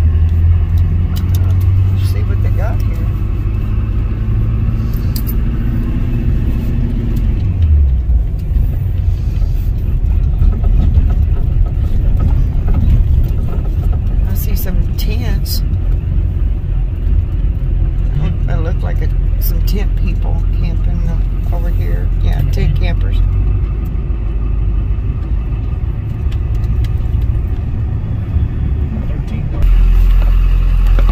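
Steady low rumble of a car's engine and tyres, heard from inside the vehicle as it drives slowly along a paved road.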